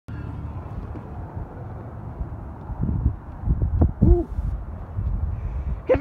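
Low, steady rumble of a pickup truck driving, heard inside the cabin, with a few short louder knocks and a brief pitched sound a little before the end.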